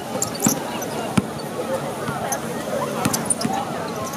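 A basketball bouncing on an outdoor hard court: a few sharp thuds, the loudest a little past one second in, over steady crowd chatter.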